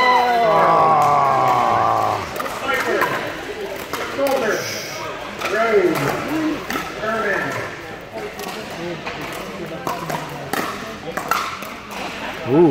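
Players' voices, a drawn-out exclamation in the first two seconds and then scattered short remarks, over the repeated sharp pops of pickleball paddles hitting plastic balls on nearby courts.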